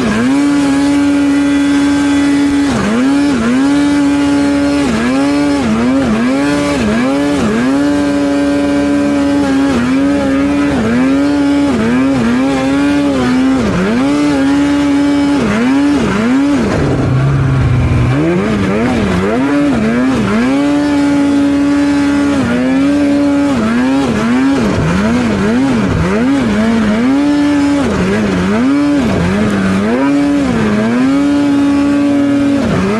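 Polaris mountain snowmobile's two-stroke engine running hard through deep powder, held at high revs with the throttle eased off and reapplied over and over, so the pitch keeps dipping and climbing back; it drops lower once about seventeen seconds in before revving up again.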